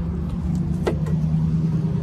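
Steady low hum of a motor vehicle running nearby, with a single sharp click about a second in.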